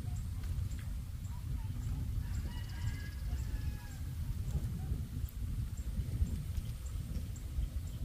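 Wind buffeting the microphone in an open field, a loud, uneven low rumble throughout. A faint bird call comes through about two and a half to three and a half seconds in.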